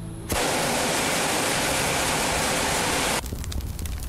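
A bonfire of dry vine wood burning hard: a loud, steady rushing roar of flames that starts suddenly and cuts off about three seconds in, after which quieter crackling and popping of the burning wood is heard.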